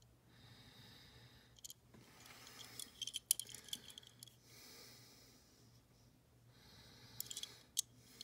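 Faint handling noise of a small die-cast model car turned in the fingers: a few small clicks and taps, clustered about three seconds in and again near the end, with soft breathing and a steady low hum.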